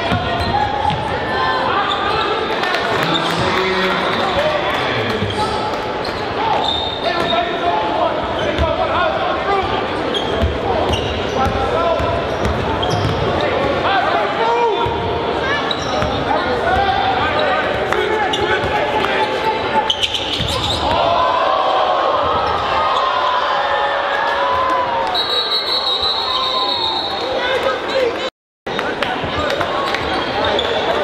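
Basketball dribbling on a hardwood gym floor under a steady din of crowd voices echoing in the hall; the sound cuts out for a moment near the end.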